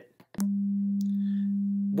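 A steady 200 Hz sine tone from a software function generator, played through the computer. It switches on with a click about half a second in and then holds one constant pitch.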